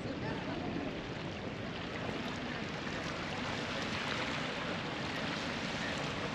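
Steady seaside ambience: light wind and small waves washing on a pebble shore, swelling slightly in the middle.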